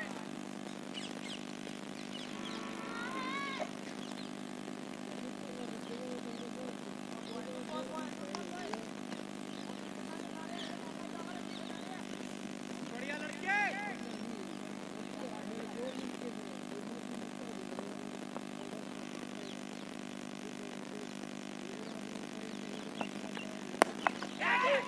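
A steady low mechanical hum under scattered distant shouts from cricketers, with a louder call about halfway through. Just before the end comes a sharp crack of bat on ball, followed by shouting.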